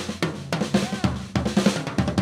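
A band's drum kit playing a passage of quick bass-drum, snare and cymbal hits, with the other instruments pulled back beneath it.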